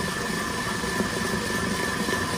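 Stand mixer running steadily at full speed, its wire whisk beating whole eggs and sugar into a foam, with a steady high whine from the motor.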